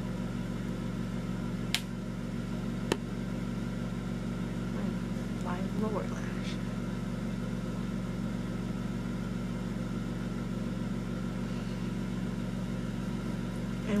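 A steady low hum, with two sharp clicks about two and three seconds in and a brief faint voice around the middle.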